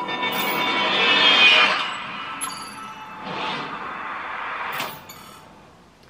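Cinematic trailer-style sound design with faint music: a swelling whoosh that peaks about a second and a half in, then sharp metallic hits, one about halfway and one near the end followed by a quick run of ticks.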